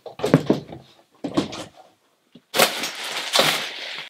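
Packaging being handled: a few short rustles, then, for the last second and a half, a steady scraping rustle as a large cardboard shoebox is pulled out through bubble wrap from a bigger carton.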